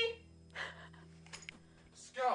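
Quiet room with a steady low hum, a short soft noise about half a second in and a few faint clicks near the middle.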